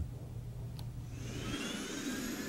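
A low steady hum, then from about a second and a half in a jet airliner's turbine whine fades in, its several tones rising slowly in pitch.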